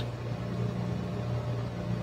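Room tone: a steady low hum with a faint even hiss, and no distinct events.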